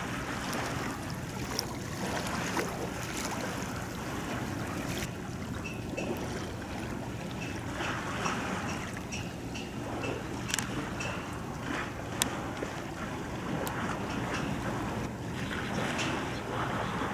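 Wind buffeting the microphone over the wash of waves at the shoreline, a steady noise with scattered sharp ticks. In the middle comes a run of short, high chirps repeated about once every half second.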